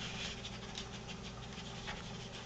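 Tamanduas sniffing and snuffling with their noses pressed to a spot on the floor, a soft breathy sound.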